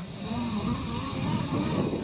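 Low, steady wind rumble on a climber's camera microphone high on the outside of a tower.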